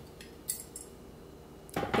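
Light clinks and taps of kitchen utensils and glassware being handled while a cocktail is garnished: a few short, sharp clicks in the first second, then only faint room noise.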